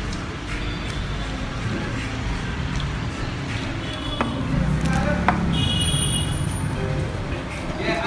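Indistinct background voices and a steady low hum, with a couple of sharp clicks about midway.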